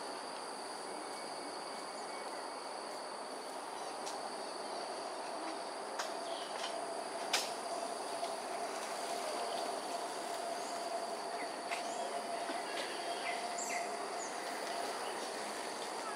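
Outdoor ambience: steady high-pitched insect drone over a broad, even background rumble. A faint steady hum runs through the middle, with a single click and a few soft bird chirps.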